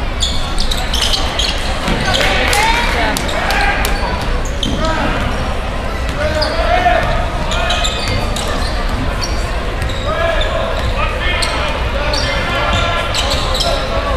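Basketball bouncing on a hardwood gym floor as a player dribbles, with many short sharp bounces, over spectators talking and shouting throughout.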